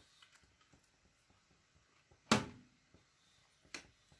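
Faint crackle of a hand pepper grinder being turned over a salad bowl, followed a little past halfway by a single sharp knock and a lighter tap near the end.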